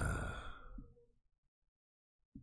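A man's drawn-out, exasperated "ugh" sigh that trails off about a second in.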